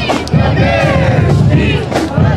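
Pep-rally crowd of band members and fans shouting a chant together over the marching band's drums, one long shout rising and falling from a moment in until near the end.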